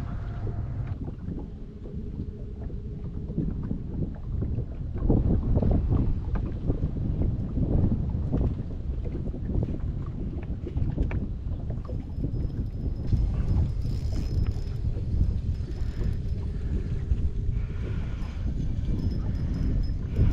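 Wind buffeting the microphone and water lapping and slapping against a small fishing boat's hull, an uneven rushing noise with choppier slaps in the middle.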